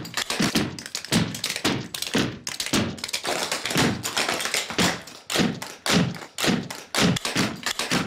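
Clogging: several dancers' shoes striking a hardwood floor in a fast, rhythmic run of taps and stomps, about three to four strikes a second.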